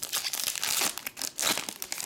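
Foil wrapper of a 2020 Panini Select soccer card pack being torn open and peeled apart by hand: a dense crinkling crackle, loudest a little under a second in and again at about a second and a half.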